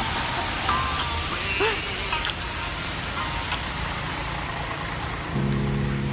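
Steady outdoor street noise of road traffic, a continuous low rumble and hiss. A brief steady low tone sounds near the end.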